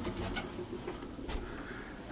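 Low, even background hiss with a few faint clicks.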